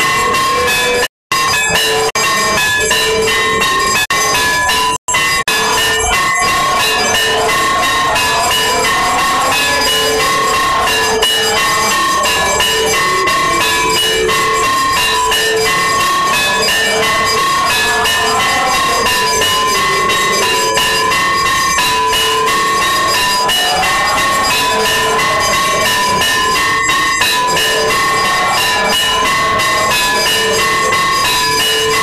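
Temple bells ringing loudly and without pause for the aarti, a dense clanging of rapid strikes over held ringing tones. The sound cuts out completely twice, for a moment each time, in the first five seconds.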